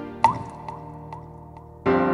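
A drop of liquid falls into a bowl and lands with a loud plop that rises quickly in pitch, about a quarter second in, followed by a few fainter drips. Piano music comes back in near the end.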